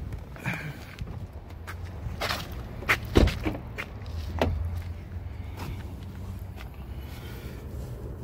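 Getting out of a car and walking to its rear door: scattered clicks, footsteps and handling noise, with one loud thump, a car door shutting, about three seconds in, over a low steady hum.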